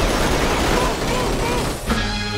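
Dense, continuous automatic rifle gunfire from several guns at once, which breaks off just before the end as guitar music takes over.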